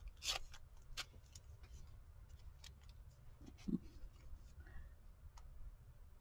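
Faint crinkles and small clicks of a paper Band-Aid wrapper being picked at and peeled open with the fingers, the wrapper old and hard to open. A brief low sound comes a little past halfway.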